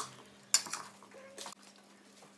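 Metal salad servers clinking against the bowl as a dressed rocket salad is tossed: a few sharp clicks, the loudest at the start and about half a second in, a softer one about a second and a half in.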